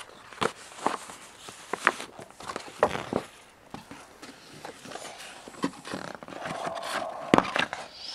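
Scattered light knocks and rustling of handling noise at irregular intervals, the loudest knock coming near the end.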